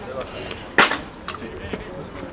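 A single loud, sharp crack about a second in, over faint voices.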